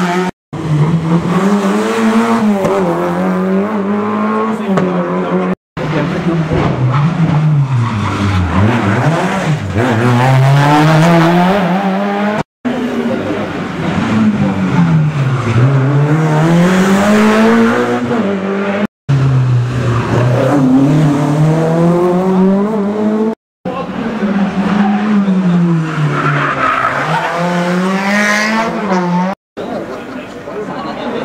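Rally cars passing one after another in short cuts, each engine note climbing and dropping as the car brakes, turns and accelerates hard away through the gears.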